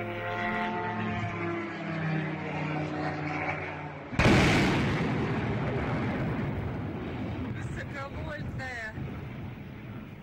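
Engine of a Ukrainian long-range attack drone buzzing overhead in a steady, slightly falling drone for about four seconds. It ends in a sudden loud explosion as the drone hits its target, followed by a long fading rumble.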